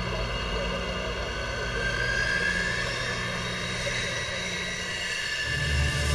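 F-16 fighter jet's turbofan engine running as the jet rolls along the runway, a steady jet whine with a tone that rises in pitch from about two seconds in.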